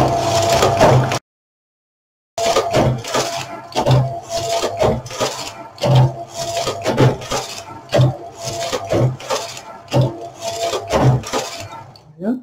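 Carriage of a Brother electronic single-bed knitting machine running back and forth across the needle bed, knitting rows. The passes come about once a second, each a clattering run with a knock where the carriage reverses.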